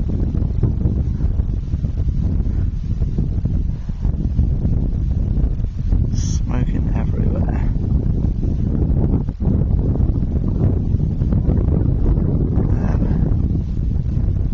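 Wind buffeting the camera microphone: a loud, continuous low rumble that rises and falls unevenly.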